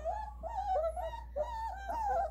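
A 3.5-week-old puppy whining in a run of short, high whimpers, one after another.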